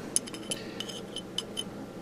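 A small metal tool tapping lightly on a cracked cast pot-metal bracket: a handful of light, irregular clinks.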